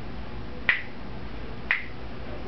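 Two crisp finger snaps, about a second apart, keeping a steady beat.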